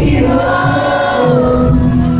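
Live pop music from a concert PA: singing held on long notes over the band and a steady bass, loud.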